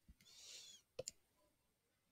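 Near silence with a few faint clicks: one just after the start and a sharper double click about a second in, with a faint hiss between them.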